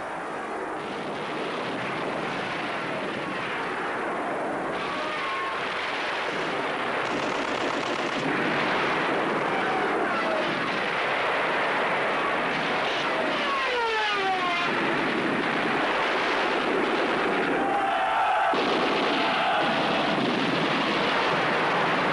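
Battle sound effects: a continuous din of gunfire and shell explosions that grows slowly louder, with several falling whistles about halfway through, like incoming shells.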